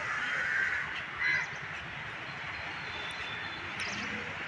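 Crows cawing: a harsh caw at the start and a shorter, louder one just after a second in, over faint steady background noise.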